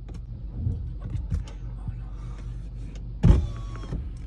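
Car's electric power window running as the door glass moves, over a steady low hum, with a sharp thump a little over three seconds in.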